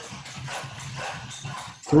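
A dog barking in a quick run of short barks.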